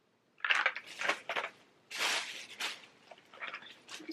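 Cardboard crayon boxes handled in the hands: a run of short, irregular rustles and scrapes starting about half a second in.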